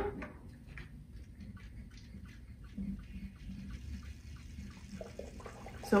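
Faint water being sucked up through a hand-operated pump from a well tube in a sand-tank groundwater model, with a run of small ticks, about four a second.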